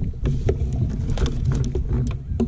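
Low steady rumble of wind on the microphone, with scattered short clicks and knocks as a fish stringer's line and float are handled on a kayak.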